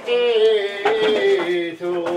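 Traditional Maremma May song (maggio) being sung: a voice holds one long note that slides slowly down in pitch.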